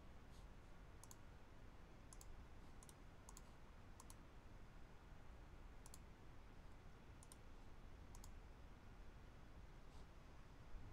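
Near silence: faint room hiss with about eight short, sharp clicks scattered unevenly through it.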